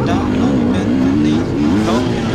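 KTM 250 EXC two-stroke enduro engine running on a woodland trail among other dirt bikes, its pitch rising and falling as the throttle is worked.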